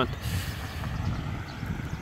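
A car going by on the street, its engine and tyre noise sliding slowly lower in pitch as it passes, over a low rumble of wind on the microphone.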